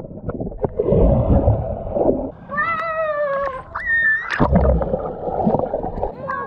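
Swimming pool heard from underwater through a submerged camera: muffled churning and bubbling water, with a drawn-out high-pitched call from a person coming through the water muffled in the middle. About four and a half seconds in, a heavy low plunge of someone entering the water.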